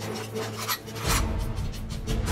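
Action-drama soundtrack: tense music with a steady low drone, short sharp hit effects, and a deep low rumble that comes in about halfway.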